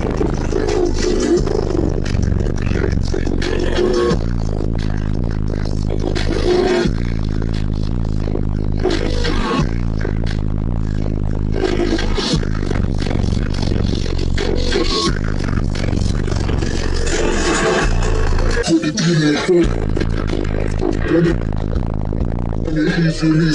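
Loud, bass-heavy music played through a car audio competition system's wall of subwoofers, heard from inside the cabin, with deep bass notes that change every few seconds and drop out briefly near the end.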